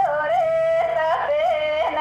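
A woman singing a Banjara devotional song, holding long high notes with quick ornamental bends and turns between them.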